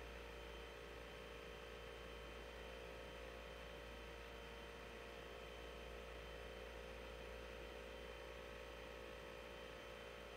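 Faint, steady electrical hum and hiss that does not change: background room tone with no music, voices or sound events.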